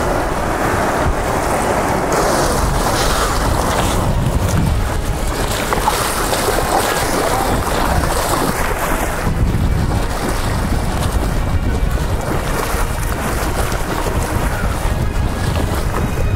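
Wind buffeting the microphone over sloshing, splashing shallow surf as a shark is released into the water, with waves washing in.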